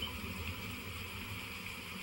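Pause in speech: steady faint hiss with a low hum underneath, the room tone of the recording.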